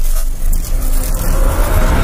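Intro sound effect: a loud, noisy rush over a heavy low rumble. It starts abruptly and holds steady, with no speech or tune.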